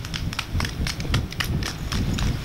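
Footfalls of a pack of marathon runners' shoes on asphalt, a quick, uneven patter of sharp slaps, several a second, over a steady low rumble.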